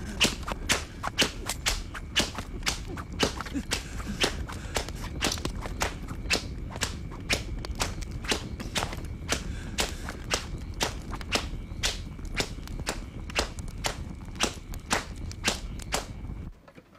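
Sharp percussive claps or strikes in a steady rhythm, about two a second, over a low steady rumble.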